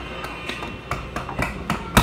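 A string of light taps and knocks from a plastic putty container being handled on a tiled tabletop, about a handful over two seconds, the loudest one near the end.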